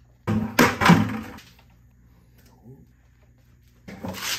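Spanner wrench breaking the threaded plastic sediment filter housing loose from its cap: a run of clunks and creaks about a third of a second in, lasting about a second, and another short one at the very end.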